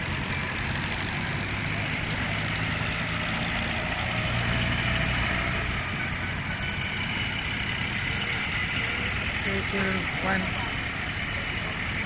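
Steady road-traffic noise: cars driving past and idling, with a low engine rumble and a murmur of voices in the background.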